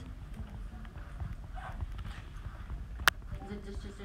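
Classroom background: faint murmured voices and scattered light knocks and taps, with one sharp click about three seconds in.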